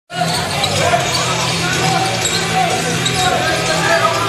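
Indoor basketball game sound: a basketball bouncing on the hardwood court amid steady crowd and player chatter echoing around the gym.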